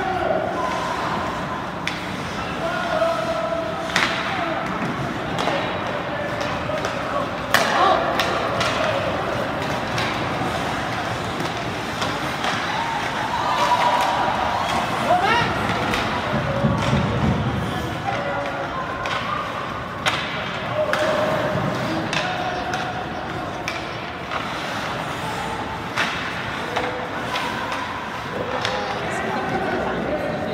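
Ice hockey play in a rink: sharp knocks of sticks and puck, and bangs off the boards, every few seconds, the loudest about seven seconds in, over the steady chatter of spectators and players.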